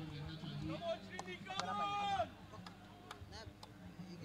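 Faint voices of people on and around the field talking and calling out, with a few light clicks.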